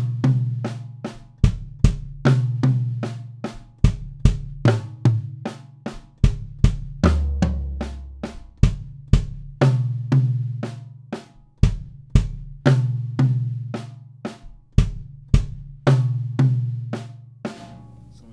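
Tama drum kit played solo in a steady, evenly spaced stream of strokes, with the toms ringing. It is a hand pattern stretched by putting kick drum strokes between the right- and left-hand notes, giving odd and six-beat groupings.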